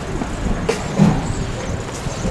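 Outdoor background noise of road traffic: a steady low rumble, with a short louder low bump about a second in.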